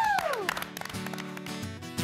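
A few people clapping, with a falling whoop of a voice at the start; about a second in, guitar music begins with sustained ringing notes.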